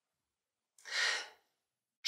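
A single audible breath from a man close to the microphone, about half a second long, about a second in; otherwise silence.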